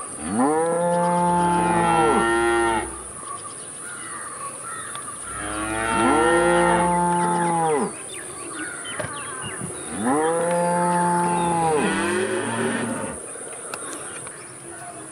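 Cows mooing: three long moos a few seconds apart, each lasting about two and a half seconds, rising in pitch at the start and falling away at the end.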